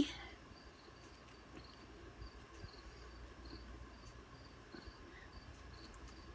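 A cricket chirping faintly, short high chirps repeating evenly a few times a second, over quiet room tone.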